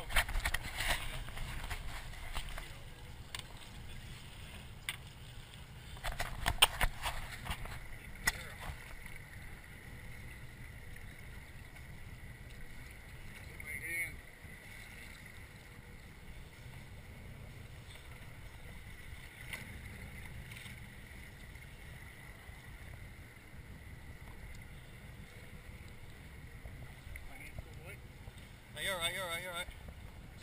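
Steady low rumble of a sportfishing boat idling at sea, with clusters of sharp knocks and clicks from gear being handled in the first second and again around six to seven seconds in.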